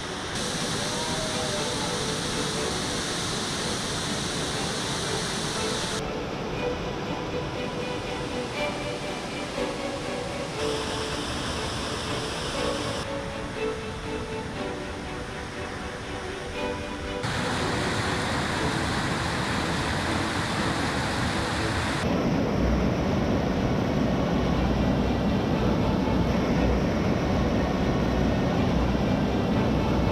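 Rushing water from Little Manitou Falls and its rapids, heard in several short clips cut together, so the rush changes abruptly every few seconds. From about two-thirds of the way through, a louder, deeper roar of whitewater pounding over rock close by.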